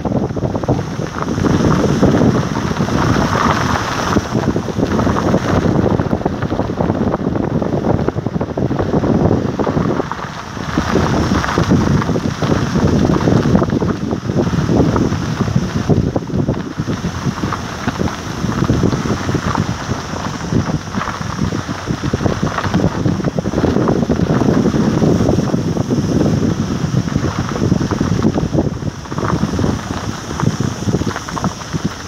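Wind rushing over a phone microphone filmed from a moving vehicle: a loud, uneven rush that eases briefly about ten seconds in.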